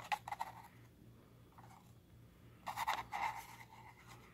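Paper rustling as an old folded brochure is handled and unfolded. There are a few light crinkles at the start and a louder rustle about three seconds in.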